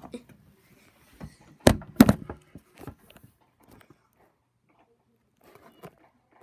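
Two loud knocks about a third of a second apart, followed by a few softer knocks.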